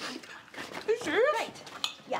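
Wordless vocal sounds from a person, one drawn-out cry that rises and falls in pitch about a second in, with the rustle of a jacket being pulled off.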